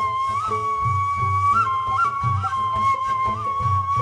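End-blown cane flute holding one long note with brief upward ornamental flicks, leading a Middle Eastern ensemble piece over plucked strings and a low recurring beat.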